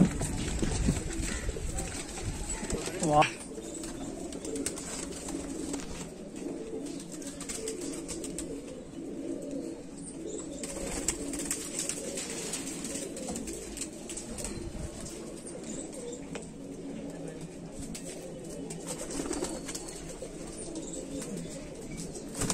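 Domestic pigeons cooing, a low wavering coo that goes on steadily.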